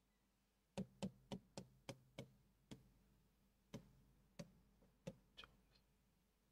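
Pen tapping and knocking against the screen of an interactive whiteboard while numbers are written: faint sharp knocks, a quick run of about six in the first couple of seconds, then a few spaced-out ones.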